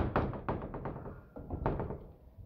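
A sharp knock, followed by a run of irregular light taps and thuds that die away after nearly two seconds.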